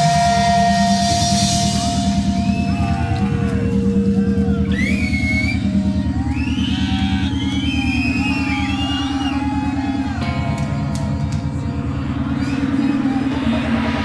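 Live stoner rock band holding a loud, droning end of a song: a steady low rumble with a fast pulsing texture underneath, and sliding, warbling high tones over it from about four to ten seconds in.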